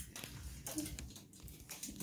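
Faint scattered crinkles and taps from an aluminium-foil toy boat being handled.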